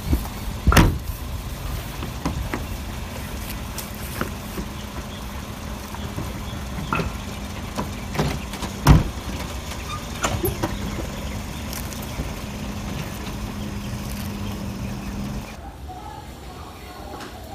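A scuffle against a parked sedan: a series of sharp knocks and thumps on the car's body and open door, the loudest about a second in and about nine seconds in, over a steady low hum that stops shortly before the end.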